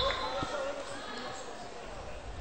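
A volleyball bounced once on the indoor court floor by a player preparing to serve: a single dull thud about half a second in, over the murmur of voices in the hall.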